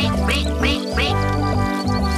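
A cartoon duck quacking three times in quick succession in the first second, each quack dropping in pitch. The quacks sit over a children's song backing track with a steady bass beat.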